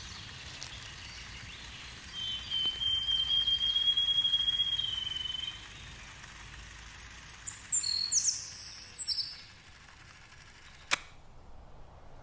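Quiet woodland ambience with bird calls: one long thin whistle from about two to five seconds in, then a few high, quick chirps around eight seconds. A single sharp click comes near the end.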